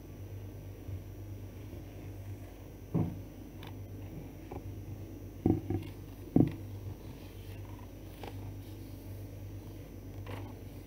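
A steady low hum with a few dull knocks, one about three seconds in and three more close together between five and a half and six and a half seconds.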